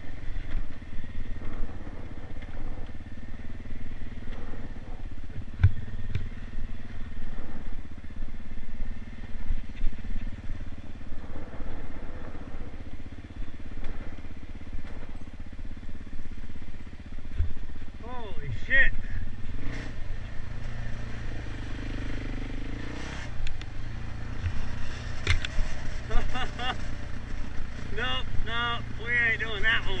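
Dirt bike engine running steadily while riding a rutted dirt trail, with a few sharp knocks from bumps.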